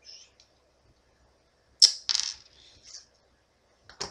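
A plastic pen being handled and worked apart: a few small clicks, then one sharp click about two seconds in, followed by a brief rattle of plastic parts.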